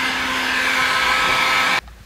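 Electric heat gun running, its fan blowing a steady rush of air with a faint steady whine, as it warms a car badge to soften the adhesive beneath. The sound stops abruptly near the end.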